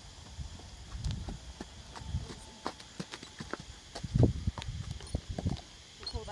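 Hoofbeats of a ridden horse on sandy dirt, an irregular run of dull thuds and clicks coming closer, with one louder thud about four seconds in.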